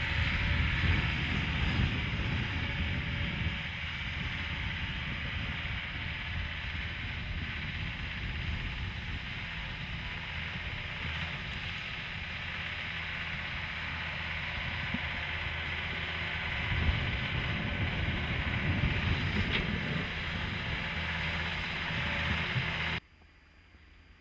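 ALLTRACK AT-50HD tracked carrier running through snow: a steady low engine note under the noise of its tracks, with some wind on the microphone. It dips a little in the middle and builds again, then cuts off abruptly to near silence about a second before the end.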